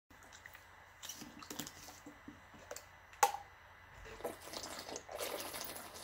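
Plastic water bottle being opened and drunk from: small handling clicks, a sharp snap about three seconds in as the cap opens, then water sloshing and swallowing from about five seconds in.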